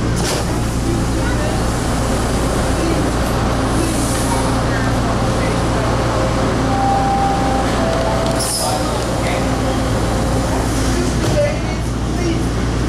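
Bombardier T1 subway car standing at a station with its onboard equipment running in a steady low hum, under a murmur of passengers' voices. A short hiss comes about two-thirds of the way through.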